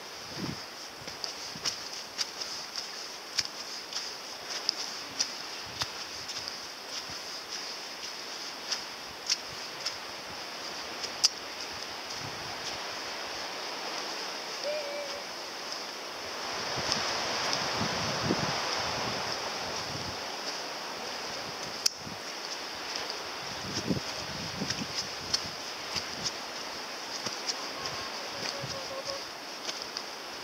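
Footsteps crunching and scuffing on a leaf-strewn dirt path, irregular, with a few sharper snaps. Under them runs a steady rush of wind that swells for a few seconds around the middle.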